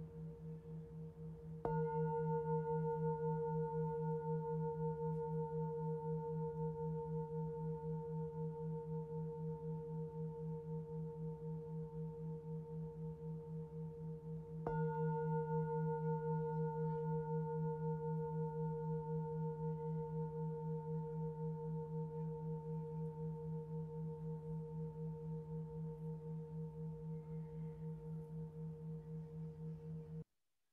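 A singing bowl ringing with a slow, pulsing waver. It is struck again about two seconds in and once more about fifteen seconds in, and each strike rings on and fades slowly.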